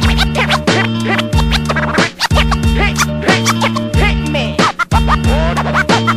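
Hip hop beat with drums and a bass line, and turntable scratching running over it in short quick pitch sweeps.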